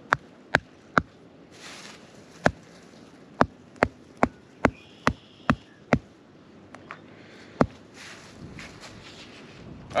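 A small claw hammer striking the driving cap on a Jobe's fertilizer spike, tapping it into the ground: about a dozen sharp taps, a few spaced out at first, then a steady run of roughly two or three a second, stopping near the end.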